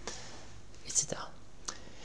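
A man's voice quietly says "etc." about a second in, a short hissy syllable in an otherwise quiet pause with a low, even room hiss.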